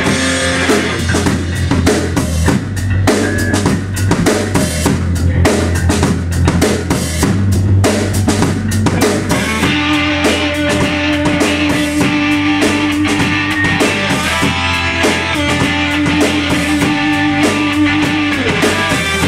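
A live rock band plays an instrumental passage with no singing: a drum kit with bass drum and snare driving it over electric bass. About halfway through, long held electric guitar notes come in over the beat.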